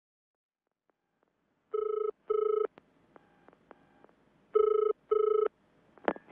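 Telephone ringing in a double-ring cadence: a pair of rings, a fainter pair, then another loud pair, starting after a short silence.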